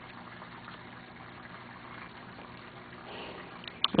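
Steady trickling and bubbling of water in a turtle aquarium, the sound of the tank's filter running, with a faint hum underneath. Two small clicks come shortly before the end.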